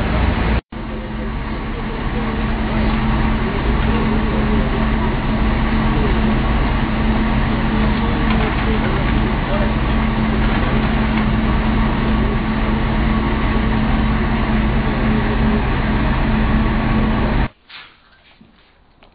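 Truck engine running steadily under the aerial work platform, with indistinct voices over it. The sound drops out for an instant just after the start and cuts off abruptly near the end.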